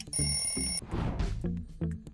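A bright bell-like ding, under a second long and cut off abruptly: the quiz's time-up signal as the answer timer runs out, over background music with a steady beat. A short rushing sweep follows about a second in.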